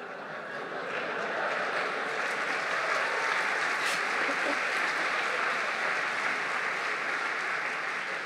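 Audience applauding, swelling over the first second and then holding steady as a dense, even clatter of clapping.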